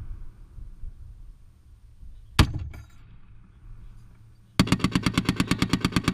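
Browning M2 .50 caliber heavy machine gun fire: a single shot about two seconds in, then near the end a rapid automatic burst of evenly spaced rounds, about ten a second.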